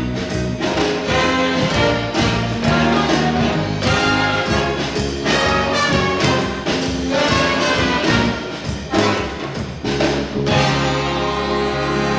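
Live big band playing jazz, with saxophones, trumpets and trombones over piano, guitar, bass and drums in punchy ensemble hits. About ten and a half seconds in, the band lands on a long held chord.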